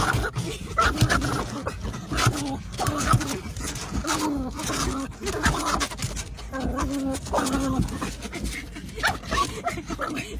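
A dog vocalising over and over, whining and yelping in agitation at a car's windshield wipers, with a person laughing near the end.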